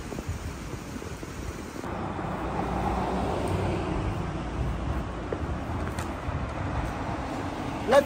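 Street ambience: car traffic driving along a town street, swelling a couple of seconds in as a car comes by. Before that, about two seconds of quieter, wind-blown outdoor noise.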